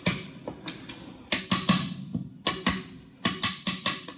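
Soft-face hammer tapping on a press-fit camshaft bearing cap of a Mazda BP cylinder head: about a dozen light, irregular taps, several in quick clusters, each with a short ring. The cap is pressed onto locating sleeves and has to be knocked loose rather than lifted off.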